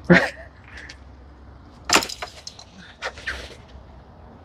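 Hunting vests and packs being handled and lifted: fabric rustling, with one sharp clack about two seconds in, a few smaller clicks after it, and another swish of handling near three seconds.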